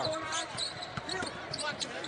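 Basketball dribbled on a hardwood court, a series of sharp bounces over steady arena background noise.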